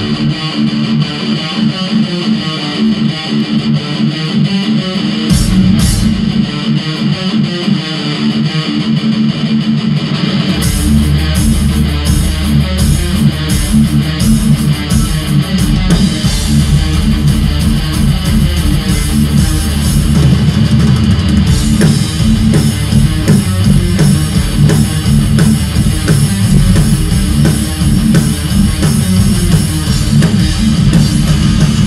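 Live thrash metal: distorted electric guitars play a riff with little low end at first. About ten seconds in, drums and bass guitar come in and the full band plays on, with cymbal hits.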